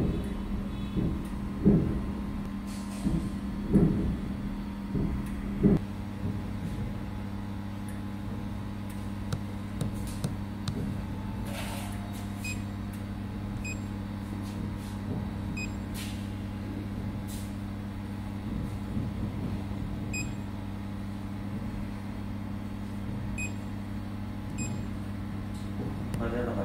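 Laser cleaning machine running with a steady hum; a deeper hum comes in about six seconds in. Several knocks in the first six seconds, and from about twelve seconds a few short, faint beeps as its touchscreen is pressed.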